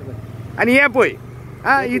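A man's voice speaking two short phrases over a steady low hum.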